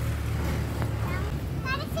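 A child's high-pitched voice in short utterances, about a second in and again near the end, over a steady low rumble.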